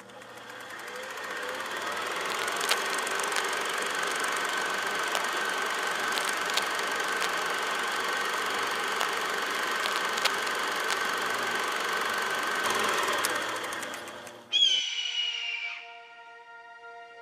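Film projector sound effect: a steady mechanical run with hiss, scattered clicks and a held tone, fading in over the first two seconds and out near the end. Then a short bright chime-like sound sliding down in pitch.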